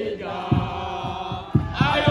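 Football supporters chanting a song together in unison, over a beat of regular low thuds.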